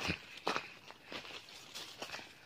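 Footsteps crunching over dry leaves and stony ground while plants brush against the legs, a step roughly every half second.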